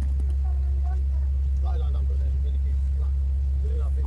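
A steady low hum, like a motor or machine running, with faint voices over it.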